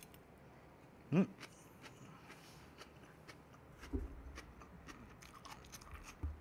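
Close-up chewing of a mouthful of crisp raw salad vegetables: faint, irregular crunches and clicks, with a soft low thump about four seconds in.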